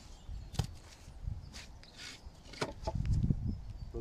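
A few sharp wooden clicks and knocks with low shuffling as the rustic wooden shave horse is handled and gripped by its loose legs, busier near the end.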